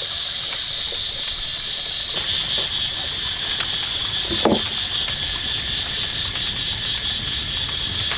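Steady high-pitched insect chorus, with a wood fire crackling in short clicks beneath it. About four and a half seconds in, a low knock as a flat stone slab is set down over the fire.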